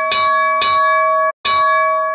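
Boxing ring bell rung in quick repeated dings, each strike ringing on. The ringing stops abruptly, then one more ding follows and keeps ringing.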